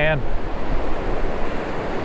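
Surf washing up the beach in a steady rush of foaming water, with wind rumbling on the microphone.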